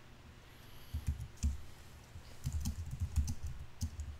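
Typing on a computer keyboard: irregular runs of keystroke clicks that begin about a second in and come thicker in the second half.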